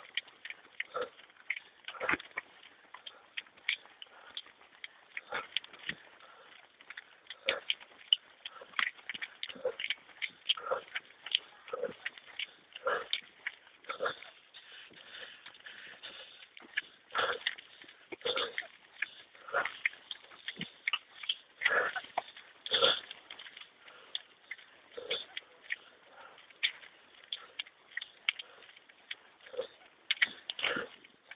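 A runner's footfalls and breathing close to a handheld camera's microphone: short, irregular sounds about once or twice a second.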